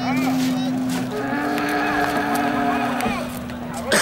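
Bull bellowing in long, steady, drawn-out lows, with a second lowing tone joining about a second in; a sudden loud noise at the very end.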